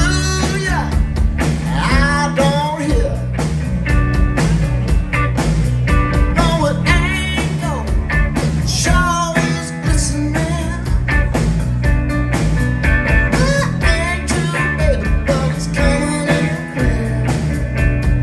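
Live rock band playing: lead vocals over electric guitar, bass guitar and drums.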